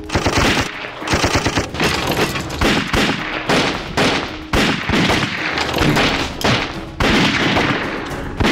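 Sustained gunfire in a shootout: many pistol and rifle shots in quick succession, some in rapid runs like automatic fire, with only brief gaps.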